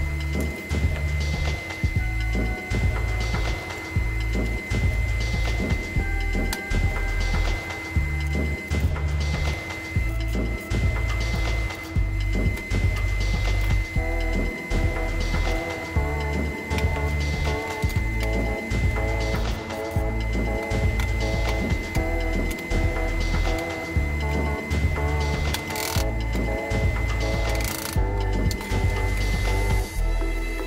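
Background music with a steady beat and a repeating bass line; a melody comes in about halfway through.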